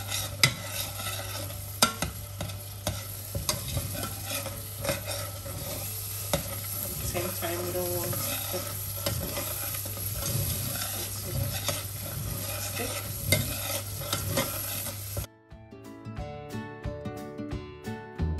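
A metal spoon stirring and scraping mashed avocado pulp against the sides of a stainless steel pot, with many sharp clicks, while the pulp sizzles as it cooks down to release its oil. About 15 seconds in it cuts off suddenly to background music with plucked notes.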